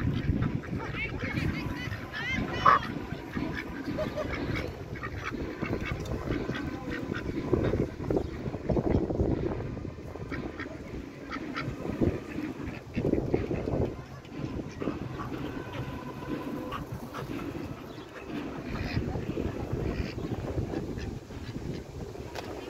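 Domestic ducks quacking, with people's voices mixed in.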